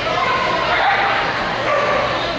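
A dog barking and yipping repeatedly, with people's voices in the background.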